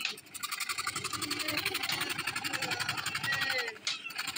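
A chapaka, a table-mounted reciprocating saw blade, cutting through MDF board with a rapid, even chatter of strokes. The cutting briefly eases near the end.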